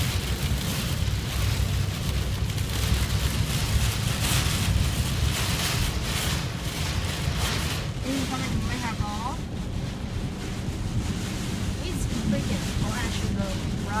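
Storm noise heard from inside a moving truck's cabin: a steady low rumble of road and wind noise, with heavy rain hitting the windshield and roof in irregular surges, strongest in the first half.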